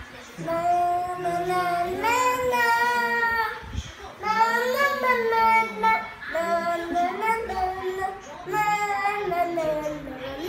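A young girl singing a children's song on her own, without accompaniment, in a string of held sung phrases with short breaths between them.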